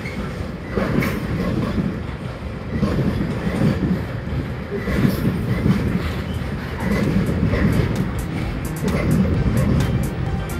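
Train hauled by a Class 66 diesel locomotive rolling past: a heavy rumble that swells and falls roughly once a second as the wheels clatter over rail joints, with sharper ticks from the wheels in the second half.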